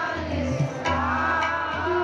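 Sikh kirtan: a hymn sung over a steady harmonium drone, with tabla strokes.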